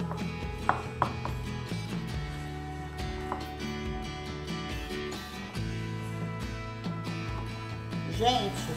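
A plastic spoon stirs and tosses pasta salad in a glass baking dish, with a few light clicks of the spoon against the glass about a second in. Background music with steady low notes plays underneath.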